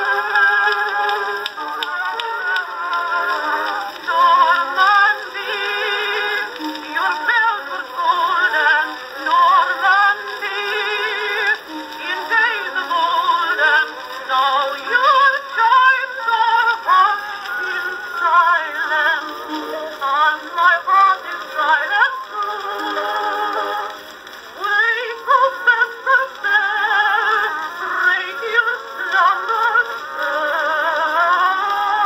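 An Edison Blue Amberol cylinder playing on an Edison Amberola DX phonograph: an acoustic-era recording of a woman singing with vibrato. The sound is thin and narrow, with no bass.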